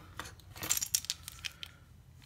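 A keychain of metal keys with a small folding knife on it jingling as it is picked up and handled, a quick run of light metallic clinks.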